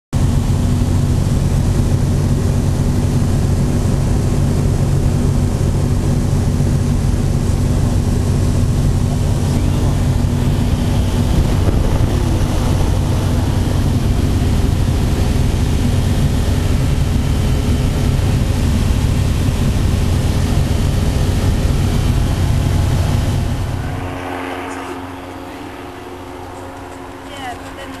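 Evektor EV97 Eurostar microlight's Rotax 912 engine and propeller running steadily in cruise, heard inside the cockpit as a loud, even drone. Near the end the drone drops away to much quieter sound.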